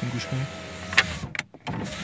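Saipa Quick's electric window motor whining steadily as the glass moves, with a couple of sharp clicks about a second in. It stops briefly and starts again. The owner puts the knocking down to a loose part inside the door striking the glass, on a brand-new car.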